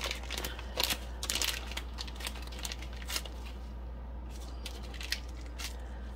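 Thick plastic bag crinkling and rustling as it is handled, in short irregular bursts, over a steady low hum.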